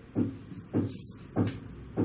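Marker pen writing on a whiteboard in four short, separate strokes.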